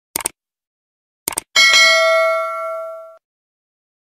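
Subscribe-button animation sound effects: a quick double click near the start, another pair of clicks about a second and a half in, then a bright bell ding that rings out and fades over about a second and a half.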